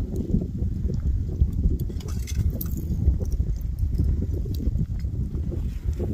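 Advancing lava flow crackling, its cooling crust cracking and small chunks clinking irregularly as it creeps forward, over a steady low rumble.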